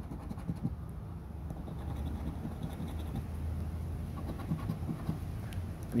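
Scratch-off lottery ticket being scratched, a faint scraping of the coating in short strokes. A low steady hum swells in the background in the middle.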